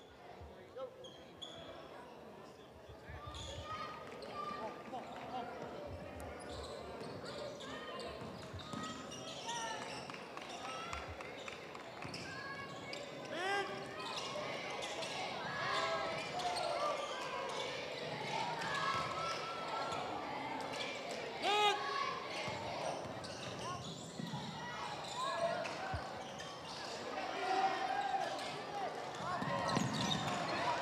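Indoor basketball game: a basketball bouncing on the hardwood court, short squeaks of sneakers, and the crowd's voices calling out and chattering. The sound grows louder over the first few seconds.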